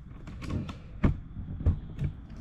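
Handling noise: four or five light clicks and knocks, spaced irregularly, as the backpack blower or the camera is moved about.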